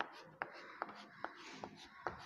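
Chalk on a chalkboard, drawing a dashed line: a row of short, faint strokes, about two and a half a second.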